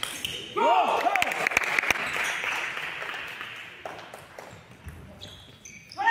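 Table tennis ball clicking sharply a few times off bat and table, with a shout and voices echoing in the hall about half a second in.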